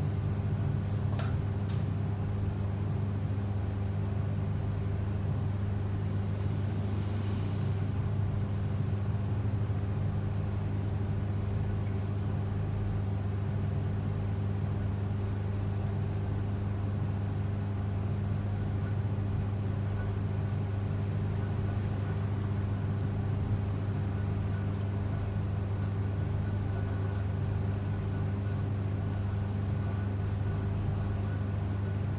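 A steady low hum that holds unchanged throughout.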